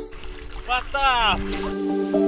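A person's short voiced call at the water surface: a brief syllable, then a longer one falling in pitch, over faint background music.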